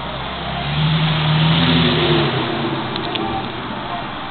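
A motor vehicle driving past, its engine note swelling to a peak about a second in and then fading, over a steady hiss.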